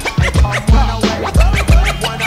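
Hip-hop beat with DJ turntable scratching: short back-and-forth scratches cutting over heavy bass and drum hits.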